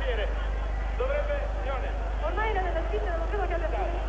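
Several people's voices calling and shouting over one another, with a steady low hum underneath.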